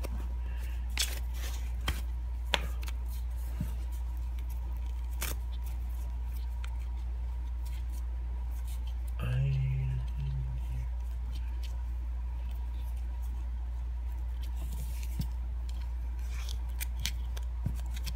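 Small clicks and soft fabric rustling from a plastic fashion doll and her clothes being handled as a t-shirt is pulled on, over a steady low hum. About nine seconds in, a brief low murmur from a voice.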